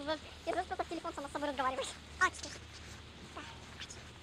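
A girl's voice talking, high-pitched, through the first half, then a quieter stretch with only a steady low rumble.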